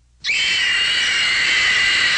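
A woman screaming: one long, high scream that starts suddenly about a quarter of a second in and holds steady.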